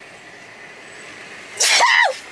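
A person sneezes once, loudly and sharply, about one and a half seconds in, after a stretch of quiet.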